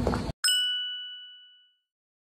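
A single bright bell-like ding, an edited-in transition chime, struck about half a second in and ringing away over about a second. Just before it, street bustle cuts off abruptly into dead silence.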